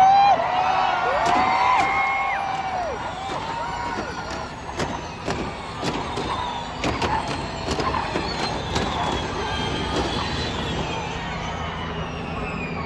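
Formula E race cars going by with a high electric whine, one falling steadily in pitch in the second half as it passes, amid crowd voices and a run of sharp clicks.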